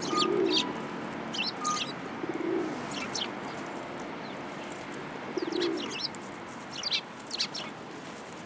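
Eurasian tree sparrows chirping in short scattered bursts, with three low coos from feral pigeons.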